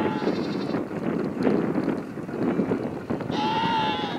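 Sheep bleating: a short bleat at the very start and a longer, louder one near the end, over a steady background rustle.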